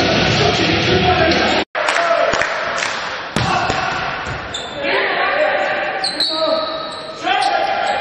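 Volleyball rally in a large indoor hall. After a brief break in the sound, sharp ball hits come about three seconds in, followed by short squeaks and echoing voices of players and crowd.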